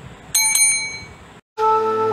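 A bell ding sound effect, struck twice in quick succession and ringing out briefly. About one and a half seconds in, after a short gap, music begins.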